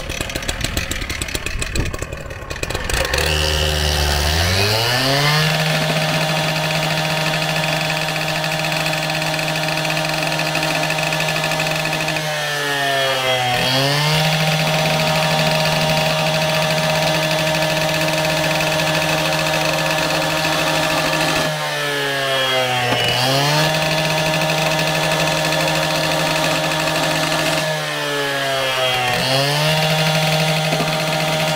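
Two-stroke Husqvarna cut-off saw running low, then revving up about three seconds in to a steady high speed as its 8-flute beveller cuts a bevel into the end of a PVC pipe. Its engine speed sags briefly three times and picks back up.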